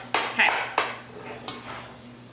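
Metal measuring spoons clinking, about four light clinks with a short ring after each.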